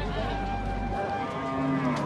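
A cow mooing once: a single long, held call of about a second, starting about halfway through.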